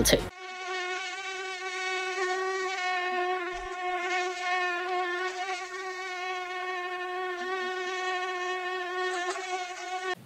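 Mosquito whining in flight: one steady high buzz with a slight waver in pitch, held for nearly ten seconds.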